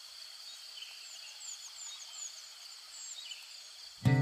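Faint nature ambience: small birds chirping in quick runs of short high calls over a steady high-pitched hiss.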